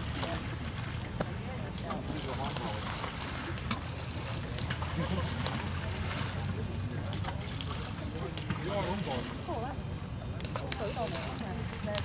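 Steady low wind rumble on the microphone, with faint distant voices now and then and a few soft clicks.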